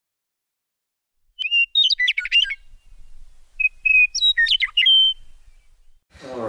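Bird song in two short phrases. Each starts with a held whistled note and breaks into a quick jumble of chirps. The first comes about a second and a half in, the second about two seconds later.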